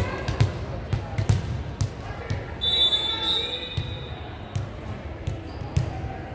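Volleyball bounced on the hardwood gym floor, a string of irregular thuds that echo in the large hall, with voices of players in the background.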